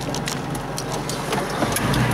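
Car engine running steadily, heard from inside the cabin, with scattered light clicks and knocks; the engine gets louder near the end.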